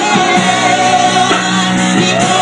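A woman singing a gospel song into a microphone, amplified, holding long notes with a slight waver.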